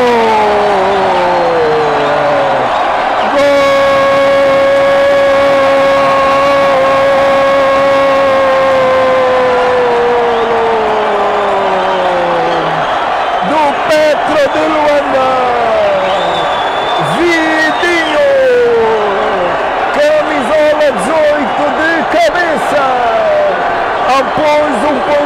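A male football commentator's drawn-out goal shout, one long held note of about ten seconds that slowly sinks in pitch, followed by excited rapid shouting.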